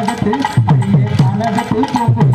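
Folk dance music with drums, over sharp wooden clicks, several a second in time with the beat: kolattam sticks struck together by the dancers.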